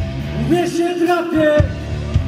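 Live rock band playing electric guitars and drums, with a voice singing over them.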